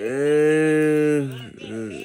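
A long, low, moo-like call held on one steady pitch for about a second and a half before it falls away, followed by a shorter, weaker sound near the end.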